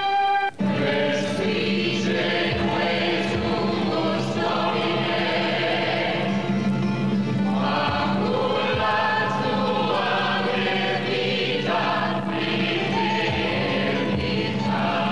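A choir singing over a steady low held note. Just before the choir comes in, about half a second in, a single held note cuts off sharply.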